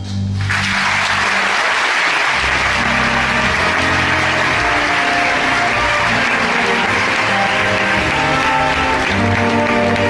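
Theatre audience applauding, breaking out suddenly just after the start, with orchestral music playing underneath that comes forward near the end.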